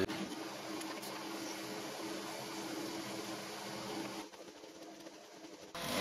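Homemade metal lathe running steadily with no cut being made, switched off about four seconds in.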